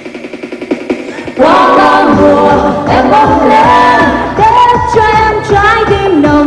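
Vietnamese pop song from a live stage performance. A brief quieter break keeps only the rhythm ticking, then about a second and a half in the full band comes back in with singing.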